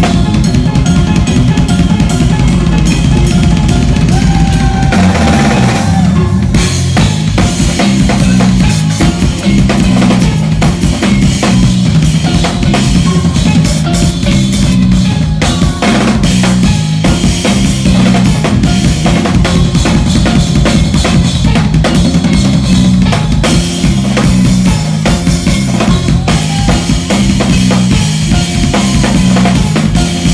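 Drum kit played live, fast and loud: dense snare, tom and bass drum strokes with cymbal hits, over a low line of pitched notes that changes every half second or so.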